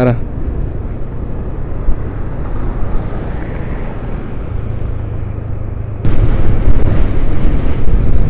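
Motorcycle riding in city traffic: steady engine and road noise, which abruptly gets louder about six seconds in.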